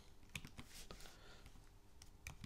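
Faint, scattered keystrokes on a computer keyboard, a few separate clicks rather than steady typing.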